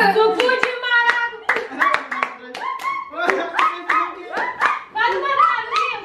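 Hand clapping in a quick rhythm, about three or four claps a second, with voices over it.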